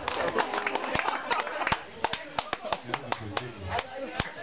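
Scattered applause from a small audience, separate hand claps standing out irregularly, with voices talking over it.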